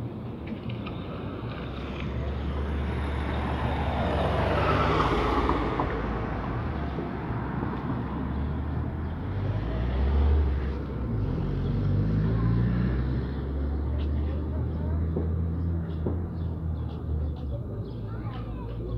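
Street traffic: a vehicle passes with a swelling then fading rush about five seconds in, over a continuous low engine rumble. An engine picks up speed around eleven to thirteen seconds in.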